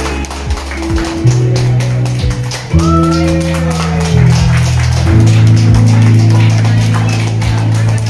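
Instrumental music with sustained low notes that change every second or two.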